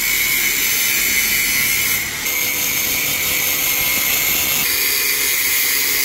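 Electric angle grinder with a cut-off disc cutting through the steel tube of a Yamaha RX-King motorcycle frame. It makes a steady high-pitched whine with a hiss, and dips briefly about two seconds in.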